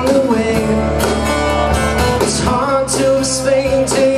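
Live acoustic country-rock band music: two acoustic guitars and an electric bass playing a steady groove.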